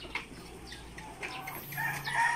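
A flock of ready-to-lay pullets in a poultry house, faint scattered clucking and short calls.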